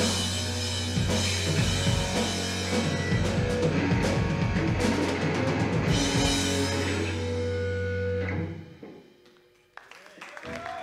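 Live rock band playing: drum kit, electric guitars and bass guitar together. Near the end the music stops and rings away to near silence.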